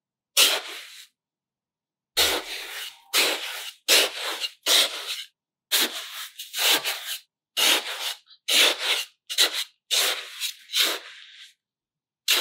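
Small plastic toy shovel digging and scooping damp sand: about a dozen short scraping strokes, each starting sharply and fading, one every half second to a second after a pause near the start.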